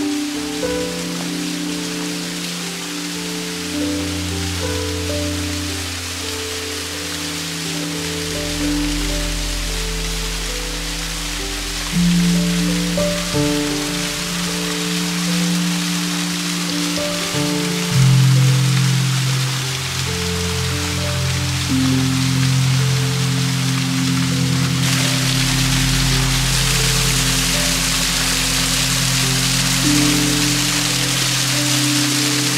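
Slow background music of long held notes and chords, over the steady rushing hiss of a small waterfall; the water grows louder about five seconds before the end.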